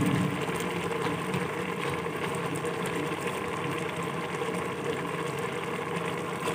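Chickpea masala sizzling steadily in hot cooking oil in an aluminium pressure-cooker pot, as the water has almost cooked off and the oil has just gone in for frying (bhunai).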